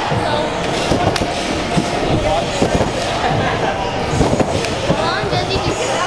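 Echoing din of a busy indoor trampoline park: many overlapping voices with repeated thuds of people bouncing and landing on trampolines.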